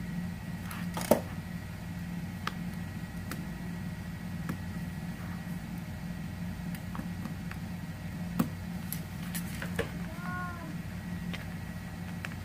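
Utility knife cutting a small hole through a packing-tape-reinforced polypropylene banner laid on cardboard: a few scattered sharp clicks, the sharpest about a second in, over a steady low hum.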